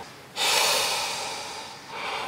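A man's long sigh, breathed out through a white wearable air-purifier face mask: one breathy hiss that starts about a third of a second in and fades away over about a second and a half.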